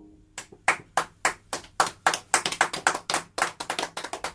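Hands clapping in applause as the song ends: separate sharp claps a few per second, growing thicker and overlapping after about two seconds as more hands join in.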